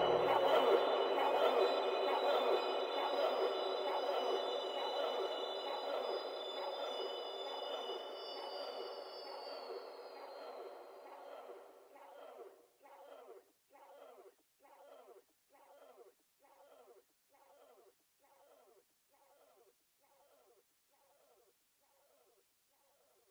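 Ending of a melodic ambient synth track: sustained synth chords fade away after the bass drops out about a second in. They leave a wavering echoed pulse, repeating somewhat under twice a second, that dies out.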